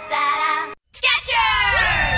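A children's sung commercial jingle over music, cut off by a brief dropout to silence a little under a second in. A new jingle then starts with a sliding, falling-pitched sound.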